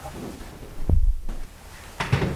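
A single dull, low thump about a second in, against faint room noise as people move about the council chamber.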